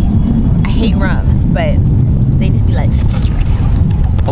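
Wind buffeting the microphone, a steady low rumble, with a woman's voice speaking briefly over it.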